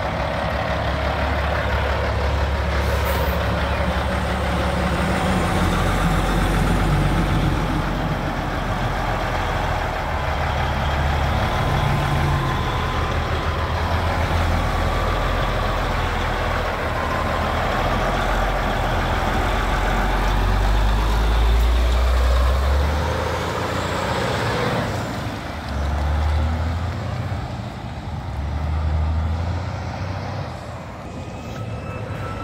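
Heavy diesel engine of a Peterbilt dump truck approaching, passing close by and pulling away. It runs loud and steady, loudest about two-thirds of the way in, then rises and falls a few times near the end as it drives off.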